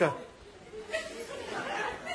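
A studio audience murmuring and chuckling quietly after a man's voice cuts off at the start.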